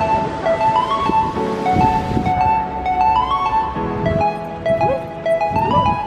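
Background music: an instrumental track of held melody notes stepping from pitch to pitch.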